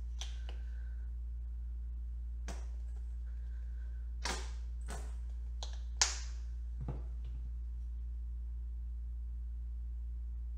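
About seven light clicks and taps from handling acrylic paint supplies while white paint is dabbed onto a painted wood board, the sharpest about six seconds in, over a steady low hum.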